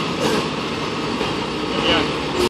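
Fire truck's diesel engine running steadily as it backs into the firehouse bay, with voices.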